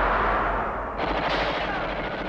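A dense, continuous barrage of movie gunfire sound effects over a low rumble, growing sharper about a second in.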